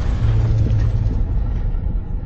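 Deep rumbling intro sound effect, the fading tail of a boom: a low steady drone with hiss that dies away in the second half.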